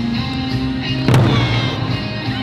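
Okinawan eisa music with one loud, sharp strike on the large barrel drums (odaiko) about a second in.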